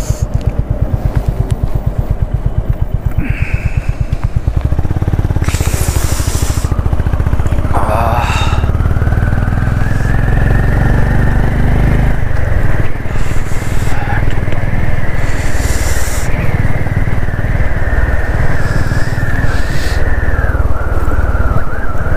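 Motorcycle engine running steadily under way, getting louder about five seconds in, with wind gusting on the microphone. A steady high whine joins from about eight seconds in and dips near the end.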